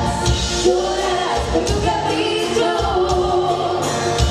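Live Tejano band playing a song: button accordion, bass guitar, drums and acoustic guitar, with a woman singing lead.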